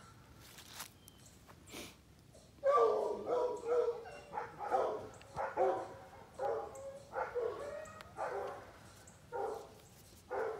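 Dogs barking in a long run of repeated barks, starting about two and a half seconds in, from the kennel dogs rather than the muzzled dog lying quietly on her bed.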